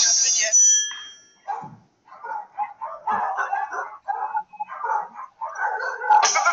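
A small terrier-type dog making a string of short, irregular vocal sounds, after a music sting ends in a ringing chime in the first second.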